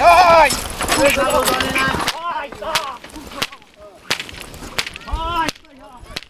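Men shouting loudly at a pair of draft horses as they haul a log on a sled, then, after a sudden drop in level about two seconds in, fainter shouts broken by a series of sharp cracks roughly every half second to second.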